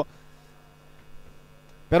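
Steady electrical mains hum, a low buzz made of a few held tones, over faint background noise.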